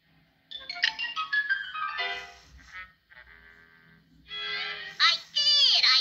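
Pet budgerigar chattering and warbling in rapid high-pitched runs, with a quieter spell about halfway through and louder falling whistled notes near the end.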